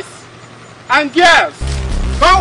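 A voice shouting a loud two-part cry about a second in, then low background music with a deep bass line coming in near the end.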